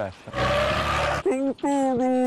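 A rushing noise for about a second, then a voice letting out two loud, drawn-out yells, the second longer, its pitch dropping as it ends.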